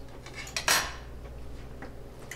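A metal fork clinking against cookware: a few light taps, then one sharp clatter about two thirds of a second in, over a steady low hum.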